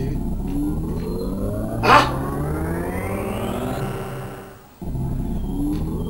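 A dramatic film sound effect of rising, sweeping tones over a low rumble. It fades out and starts again the same way near the end, with a short loud burst about two seconds in.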